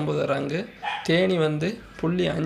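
Speech only: a man talking in Tamil.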